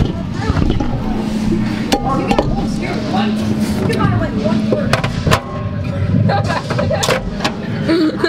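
Voices and laughter close by, with several sharp knocks and clacks, and a steady low hum through the first half.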